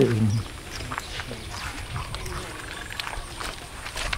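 Quiet outdoor ambience with scattered faint animal calls and small clicks, following the tail of a spoken word at the very start.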